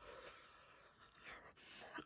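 Faint breaths out through the mouth, one at the start and one near the end, from someone cooling a mouthful of hot pizza.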